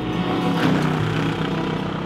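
The V8 engine of a 1965 Chevrolet Corvette Stingray running steadily as the car drives past and pulls away.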